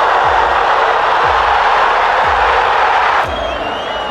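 A football stadium crowd cheering loudly at a goal, laid under a music track with a deep bass beat about once a second. The cheering drops off sharply about three seconds in, leaving the music.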